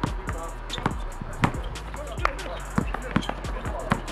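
A basketball bouncing on an outdoor hard court during play: a series of short, irregularly spaced thuds, with music playing underneath.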